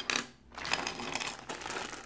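Clear plastic bag crinkling as it is handled, an irregular crackle starting about half a second in.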